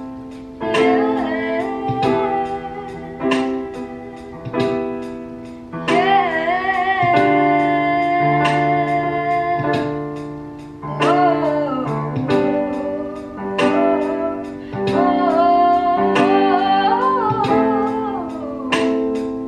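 Woman singing while playing chords on a Donner DEP-20 digital piano. Notes are struck about once a second and die away; the voice comes in about a second in and holds long notes in the middle and near the end.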